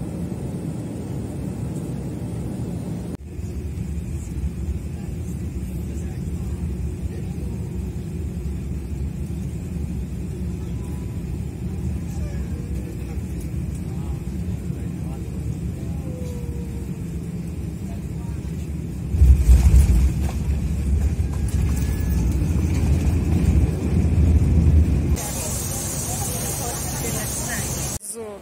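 Jet airliner cabin noise on final approach and landing: a steady low rumble that grows much louder about 19 seconds in, at touchdown and the rollout down the runway. It breaks off suddenly about 25 seconds in, giving way to a brighter hiss.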